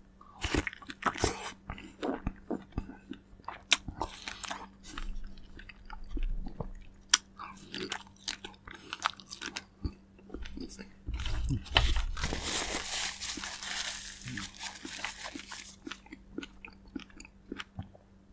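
Close-miked biting and chewing of fresh fruit: a series of sharp, wet crunching bites, then a denser stretch of chewing from about twelve to fifteen seconds in.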